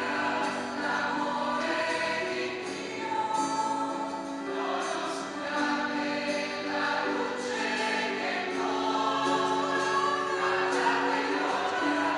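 Choir singing slow music with long held notes.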